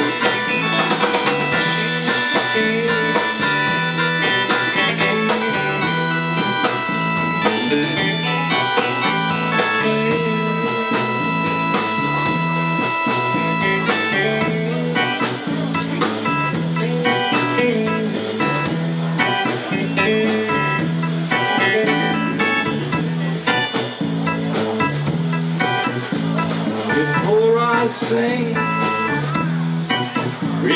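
Live rock band playing an instrumental passage: sustained electric organ tones over a repeating bass figure, with electric guitar and drum kit, no singing.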